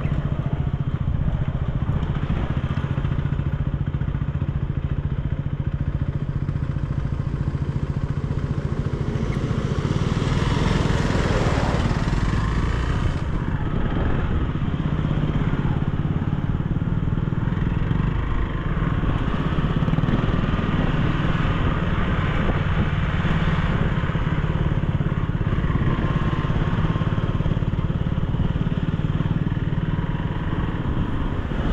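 Motorcycle engine running steadily at low road speed, heard from on board the bike, with tyre and road noise from a rough gravel surface. About ten seconds in, the engine note briefly shifts before settling back.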